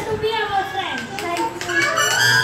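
Young children's voices talking and calling out over one another.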